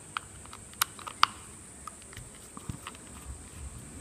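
Small clicks and ticks of a screwdriver working the screw that fixes a jet pump's coupling to its impeller shaft, with the plastic pump parts handled. Three sharper clicks come in the first second and a half, then a few fainter ticks.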